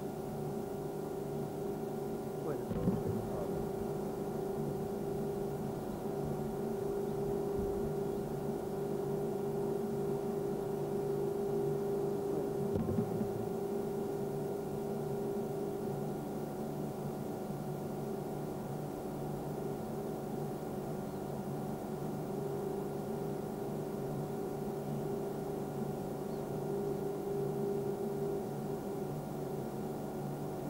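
A steady low hum made of several held tones, briefly disturbed about three seconds in and again near the middle.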